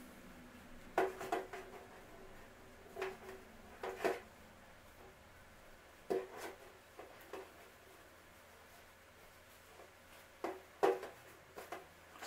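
Hands working tulle strips onto an elastic hair tie held on a clipboard: soft rustles and small knocks, about ten scattered irregularly, the sharpest about a second in and near the end.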